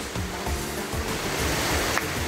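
Steady rushing of a small waterfall cascading over rocks.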